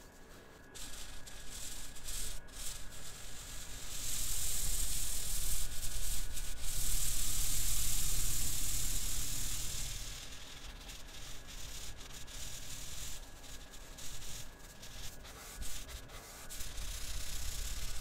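Felt-tip marker tip rubbing back and forth on paper as a shape is coloured in: a scratchy scribbling that comes in short broken strokes at first, runs loudest and most steadily through the middle, then thins to patchy strokes again.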